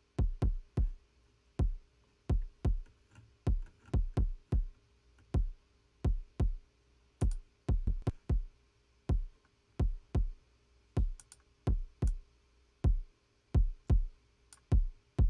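A programmed kick drum track played back on its own, not yet equalised. It plays a syncopated pattern of short, deep thuds, each with a sharp click on top, about two hits a second.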